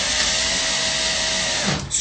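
Cordless drill driving a screw, its motor running at a steady whine, then stopping near the end.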